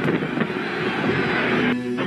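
Background music mixed with a loud, rough crowd din from handheld footage of a jostling crowd.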